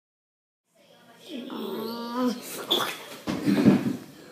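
Animal-like vocal sounds, a creature voice for the 'dark creature' card. After about a second of silence comes a drawn-out call that bends in pitch, then harsh, breathy bursts, loudest near the end.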